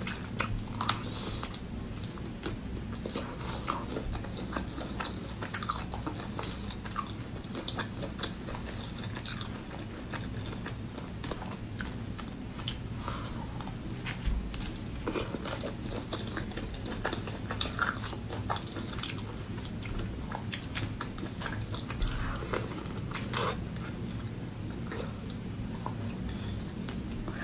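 Mouth sounds of eating raw marinated shrimp: sucking at the shrimp heads and chewing, with many small irregular clicks and crackles from the shells, over a low steady hum.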